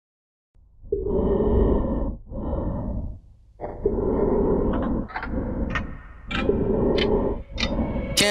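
Heavy breathing through a gas mask: three slow in-and-out breath cycles with a raspy, filtered sound. In the second half a run of sharp clicks comes in, about two a second.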